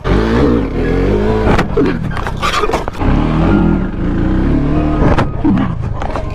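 Motor vehicle engine revving loudly, its pitch wavering up and down in two long surges.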